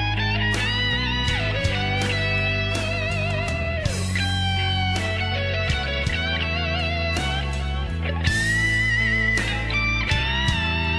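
Rock music: an electric guitar plays sustained lead notes with vibrato and slides, over a bass line and drums.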